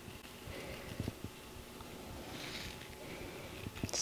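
Onion seeds being sprinkled by hand onto moist potting soil in a plastic tray: a faint rustle of fingers rubbing seeds apart, with a few soft ticks.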